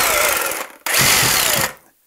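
Cordless reciprocating saw run with no blade fitted, its plunger hammering back and forth very hard and very quick. It is triggered in two short bursts of under a second each. The first winds down with a falling whine, and the second stops abruptly.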